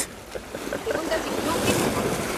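Sea waves breaking and washing against shoreline rocks, the surge building from about half a second in and loudest near the end.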